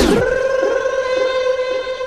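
A transition between songs in a DJ rhumba mix: the music cuts off with a quick falling sweep, leaving one steady held tone that slowly fades.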